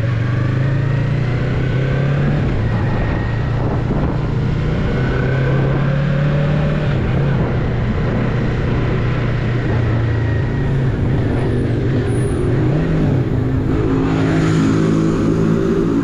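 Yamaha MT-03's parallel-twin engine running as the motorcycle is ridden along, its pitch shifting with the throttle, over the rush of wind from riding. The engine note grows fuller near the end as the bike pulls on.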